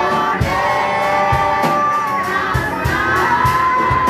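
Live church praise singing: a woman's lead voice held in long, sliding notes through a microphone and PA, over a steady drum beat, with the congregation joining in.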